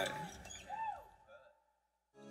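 Brief laughter that trails off, with one short rising-and-falling laugh about three-quarters of a second in. The sound then cuts to dead silence about halfway through.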